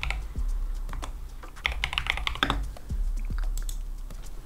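Typing on a computer keyboard: a few scattered keystrokes, then a quick run of them about halfway through.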